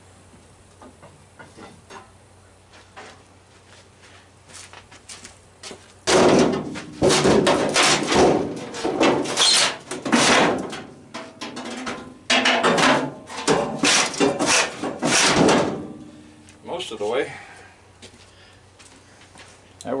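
Metal scraping and clanking as a part is pried loose inside a sheet-metal furnace cabinet: a few faint clicks, then a loud, dense run of scrapes and knocks lasting about ten seconds.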